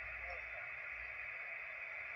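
Steady, even hiss of band noise from an HF amateur radio transceiver's receiver, thin and narrow like the audio of a radio tuned between signals.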